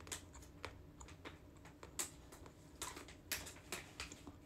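About six faint, irregularly spaced sharp clicks and taps, from small hard objects being handled or bitten.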